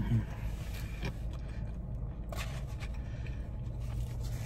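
A man chewing a mouthful of taco, with a brief appreciative "mm" at the start and a few faint mouth clicks, over a steady low hum inside a car.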